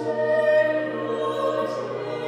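Chamber choir singing sustained chords, with sharp 's' consonants sounding together near the end.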